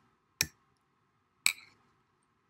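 Two sharp clicks about a second apart, the second one louder.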